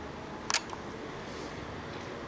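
A camcorder's night-vision mode switch being flicked off: one sharp click about half a second in, then a fainter click just after, over the camcorder's steady hiss.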